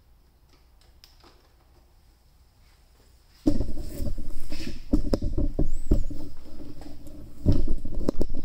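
Handling noise from a handheld camera: a few faint clicks, then from about three and a half seconds in, loud rubbing, bumping and knocking against the microphone.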